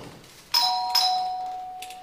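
Electronic two-note ding-dong doorbell chime: a higher note, then a lower one a little under half a second later that rings on and fades slowly.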